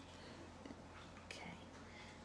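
Near silence: faint room tone with a steady low hum and one faint click just over a second in.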